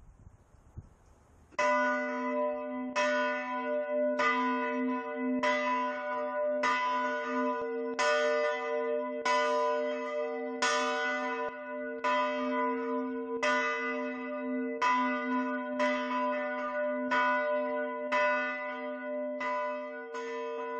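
A large church tower bell ringing steadily, struck about once every 1.3 seconds after a quiet first second and a half, its deep tone humming on between the strokes.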